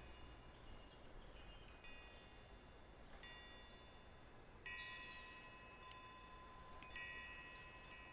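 Faint chime tones, each with several bright ringing pitches, struck a few times (about three seconds in, near five seconds and near seven seconds) and fading away between strikes, over near silence.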